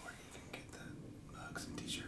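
A man's voice murmuring faintly, close to a whisper, between louder stretches of talk.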